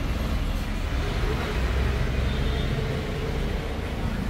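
Steady low rumble of road traffic, vehicles passing on a busy street.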